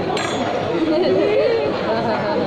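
People talking in a busy restaurant: steady chatter of voices.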